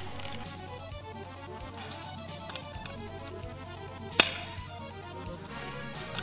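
Background music, with one sharp crack about four seconds in: a single shot from a spring-powered airsoft sniper rifle.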